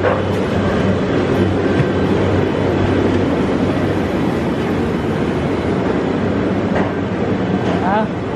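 A steady, loud rumbling din with a low, even hum running under it, and voices faintly in the background.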